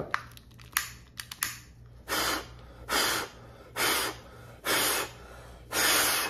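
Forceful breaths blown out through a KF94 face mask at a lighter flame, five in a row about a second apart, each a short hiss, after a few light clicks. This is a mask flame test: breathing hard at the flame to see whether air gets through the mask.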